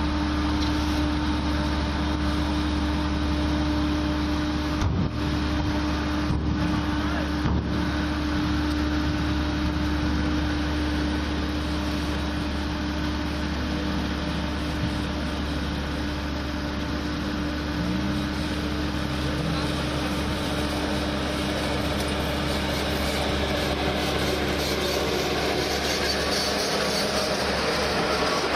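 Tandem steel-drum road roller running steadily, a continuous low engine drone as it works over fresh asphalt.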